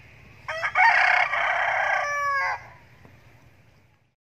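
A rooster crowing once: a single call of about two seconds, starting about half a second in and dropping in pitch at its end.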